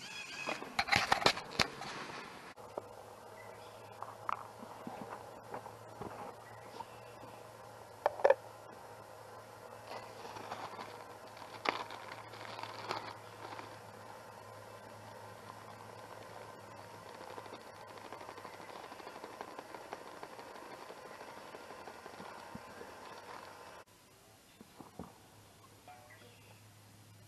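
Camp breakfast preparation: scattered rustles, clicks and taps of a food pouch and a metal pot being handled, over a steady faint hiss. A louder burst of rustling fills the first two seconds.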